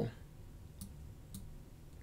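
Two faint computer mouse clicks about half a second apart, over quiet room tone.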